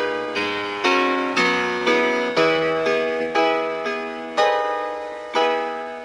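Keyboard music: chords struck about twice a second, each ringing and fading before the next.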